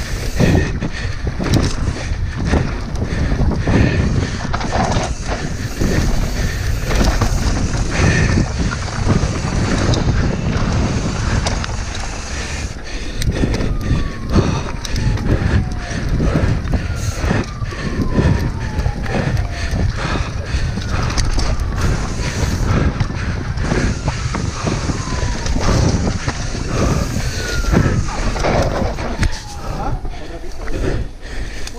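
Devinci Spartan enduro mountain bike ridden fast downhill on dirt singletrack: steady tyre roar with constant rattling and knocking from the chain and frame over the rough ground, and wind on the microphone. In the second half, a faint falling whistle-like tone repeats about every three seconds.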